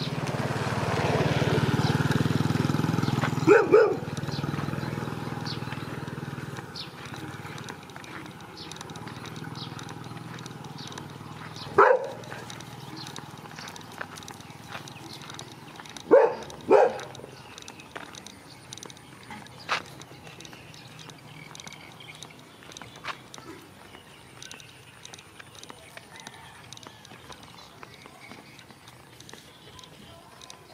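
Dogs barking in short single barks: a pair about three and a half seconds in, one near twelve seconds, a pair around sixteen to seventeen seconds and one near twenty seconds, over soft footsteps on a dirt road. A rushing noise swells and fades over the first several seconds.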